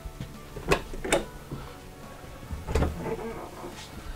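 Wooden cabinet doors being opened by hand: three sharp clacks, about a second in, just after that, and near three seconds, the last with a duller thud. Quiet background music runs under them.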